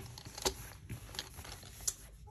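Wooden colored pencils in a fabric pencil roll clicking against one another as the roll is handled and moved: a few light clicks, the sharpest about half a second in and near the end.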